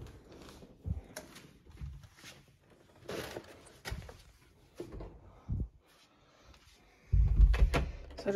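Light knocks, scuffs and handling sounds of someone moving through a doorway with a delivery bag. Near the end comes a louder, deep thud, typical of the apartment door being shut.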